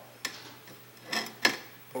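Two sharp clicks a little over a second apart, over a low steady hum.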